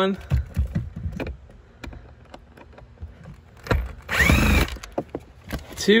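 An electric impact with a 5 mm socket spinning out the second cabin-filter cover bolt in one burst of just under a second, about two-thirds of the way in, its motor whine dropping in pitch as it stops. Light clicks of handling in between.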